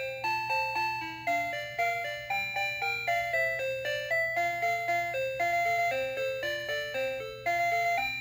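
Toy kettle's sound chip playing a tinny electronic beeping melody, about three or four notes a second, over a steady low hum.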